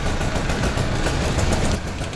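Tuk-tuk (auto rickshaw) engine running and road noise while driving, heard from inside the open cab.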